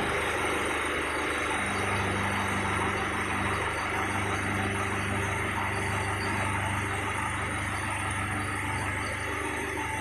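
Engine of the heavy machine moving the engineless Dynahoe backhoe, running steadily at low speed with an even hum.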